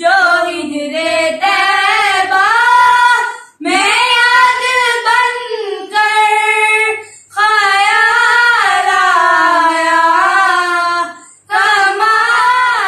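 Two children, a girl and a boy, singing an Urdu naat together with no accompaniment, in long held phrases with three brief pauses between them.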